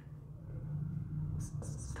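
Marker writing on a whiteboard, a few faint strokes, over a low steady hum.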